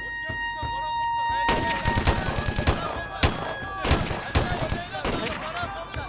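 Rifles fired into the air by a group of men: a rapid, irregular run of shots that starts about a second and a half in and goes on, with men's voices underneath.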